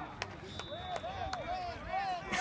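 Distant voices of players and spectators calling out across an outdoor football field, with a couple of sharp clicks.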